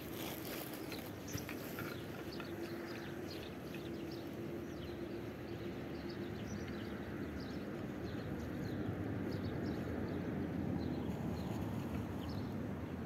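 Outdoor ambience: a steady background rush with many short, high, falling chirps of small birds scattered throughout.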